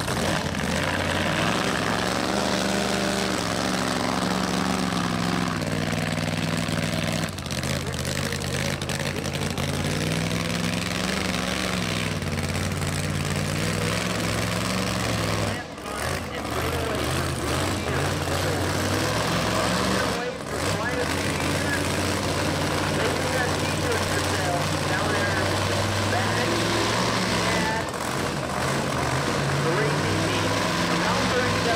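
Supercharged V8 of a 1959 Cadillac Coupe DeVille drag car running at low speed, its pitch rising and falling gently as it is driven slowly, with brief drops about 16 and 20 seconds in.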